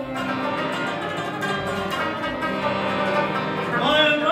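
Rabab played solo in a run of rapid plucked notes over a steady low drone. A singer's voice comes back in right at the very end.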